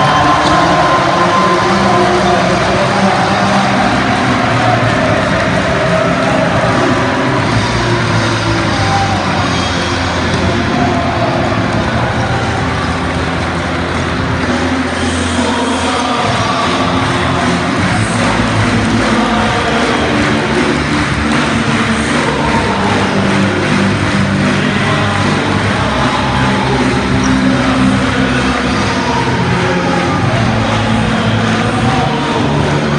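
Home crowd in an indoor basketball hall cheering and chanting loudly and without a break, celebrating a win at the final buzzer.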